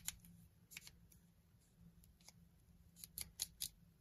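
Faint clicks and ticks from the focus and aperture rings of a Tair-11A 135 mm f/2.8 lens being turned by hand, scattered at first, then a quick run of clicks about three seconds in.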